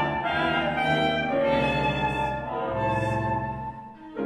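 Mixed chamber ensemble of winds, brass and strings playing held chords that change every second or so, with the sound dropping away briefly near the end.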